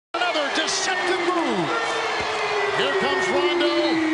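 Basketball shoes squeaking on a hardwood court over arena crowd noise: several short squeaks that rise and fall in pitch, with a long steady tone sliding slowly lower in pitch underneath.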